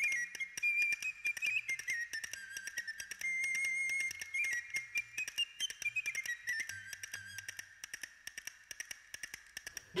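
A single whistled melody line, high and thin, stepping and gliding up and down in pitch, with frequent faint clicks throughout.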